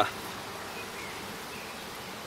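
Honeybees buzzing steadily around an opened hive as a comb frame thick with bees is lifted out.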